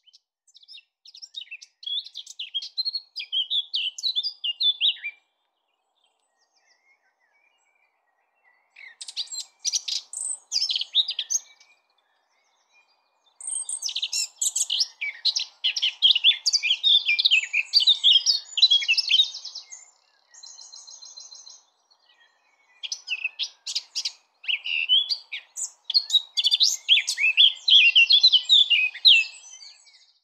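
Male blackcap singing: several bursts of rich, fast warbling song separated by pauses of a few seconds, with a short even trill about two-thirds of the way through.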